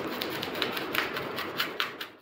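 Hands working on a sheet of chart paper and cardboard, making irregular clicks and scratchy paper noises over a steady hiss, with a few sharper clicks in the second half.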